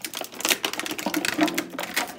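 Clear plastic packaging crinkling and crackling as it is handled and pulled open to get a paintbrush out, a quick irregular run of crackles.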